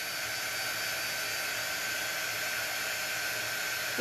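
Small handheld corded blow dryer running steadily: an even fan rush with a thin steady whine. It is drying freshly applied chalk paste on a silkscreen transfer.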